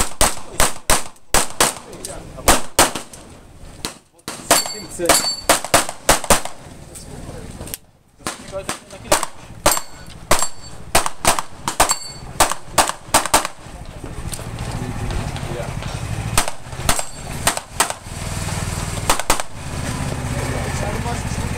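Pistol shots in rapid pairs and strings, fired in competition, with short breaks between groups. Some hits leave a brief metallic ring from steel targets. The shots thin out to a few last pairs near the end.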